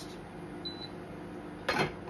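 A single short, high electronic beep from an induction cooktop's touch control as it is turned up, over a faint steady appliance hum.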